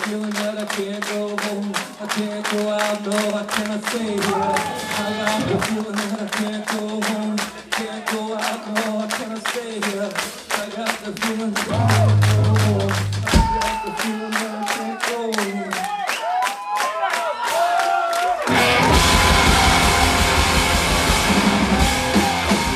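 Live noise punk rock: a held electric guitar tone through the amp, pulsing evenly about four times a second, with sliding notes near the end. About three-quarters of the way through, the full band comes in loud with drums and distorted guitar.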